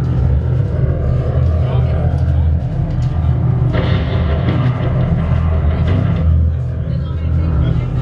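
Heavy rock band playing live and loud: distorted electric guitar and bass through amplifier stacks, drums and cymbals, with shouted vocals into a microphone.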